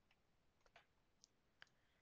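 A few faint, scattered clicks of a computer mouse over near silence, as a mask is being adjusted frame by frame in editing software.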